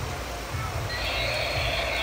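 A battery-powered toy dinosaur is switched on about a second in, and its electronic sound chip starts a sustained, buzzy, roar-like sound effect. A steady low rush of water runs underneath.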